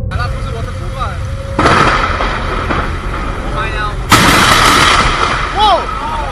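Two close thunderclaps from nearby lightning strikes: a sudden loud crack about a second and a half in that rumbles on, then a sharper, louder crack about four seconds in.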